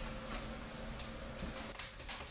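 Kindling fire catching in a Morso 8188 cast iron wood-burning stove, crackling and popping faintly, with a few sharp pops about a second in and near the end. The cracking and popping is a sign that the kindling is a little wet.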